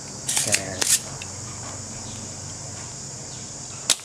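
Steady high-pitched hiss with a low hum under it, broken by two sharp clicks, one about a second in and one near the end.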